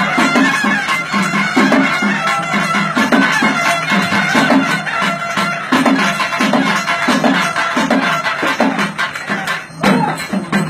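Traditional Tamil folk music for karakattam dancing: a shrill, reedy wind instrument plays a melody over a regular drum beat, with a short break just before the end.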